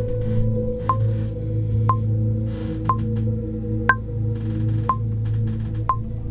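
Dark tension underscore playing back: a steady low synth drone pad with airy, hissing swells, over a DAW metronome click track ticking about once a second, with a higher-pitched accent click on every fourth beat.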